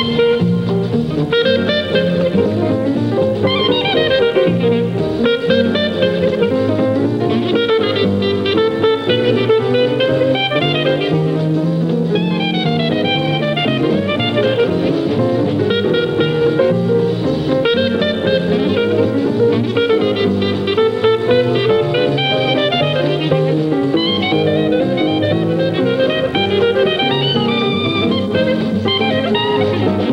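Clarinet playing quick melodic runs in an up-tempo Dixieland jazz number, backed by a jazz rhythm section with guitar and a stepping bass line.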